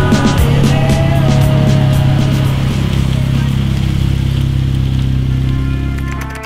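Dodge Challenger's engine running at a steady low drone, holding nearly constant pitch as the car rolls in slowly, with background music over it.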